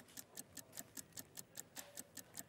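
Faint, fast ticking of a countdown clock sound effect, about five even ticks a second.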